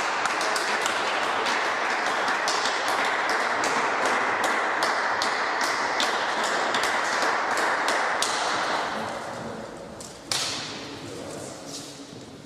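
Spectators applauding, a dense patter of claps that fades out about nine seconds in. A single sharp knock follows about a second later.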